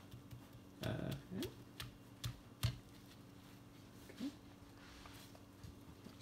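A few light, sharp clicks, like a small bottle knocking against a funnel as it is held upside down to drain the last drops into a graduated cylinder, then a faint steady hum.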